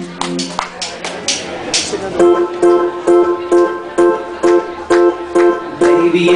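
Live band starting a song instrumentally with guitar and keyboard: a few loose strums at first, then about two seconds in a steady rhythm of chords struck about twice a second.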